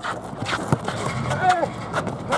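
Sneakers scuffing and stepping on an asphalt court, with a basketball bouncing during live play. The knocks are irregular, one louder about a third of the way in, and a brief shout comes near the end.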